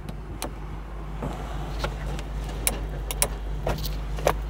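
Light clicks and knocks from the convertible soft top's windshield-header latch and the surrounding plastic trim being handled, over a steady low hum in the car's cabin.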